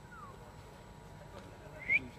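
Human whistling from spectators: a short, faint falling whistle at the start, then a sharp rising whistle near the end that is the loudest sound, over a low murmur of the crowd.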